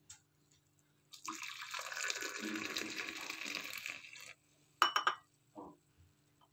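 Milky tea poured in a steady stream from a steel vessel into a ceramic mug for about three seconds. A short ringing clink follows about five seconds in.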